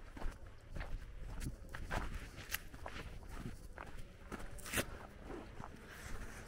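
Footsteps of a person walking on a gravel and dirt lane, about two steps a second, a few of them sharper crunches.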